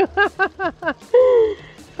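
A toddler's high voice crying in a quick run of short falling sobs, then one longer wail, upset at the top of a water slide.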